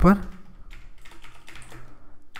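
Typing on a computer keyboard: a short run of faint key clicks at uneven spacing as code is entered.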